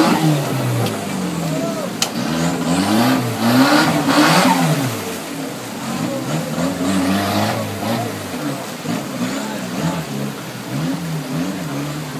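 Off-road buggy's engine revving up and down again and again as it claws over rocks and through a muddy creek bed, its tyres spinning and throwing mud and water. It is loudest in the first few seconds and eases off toward the end, with a sharp knock about two seconds in.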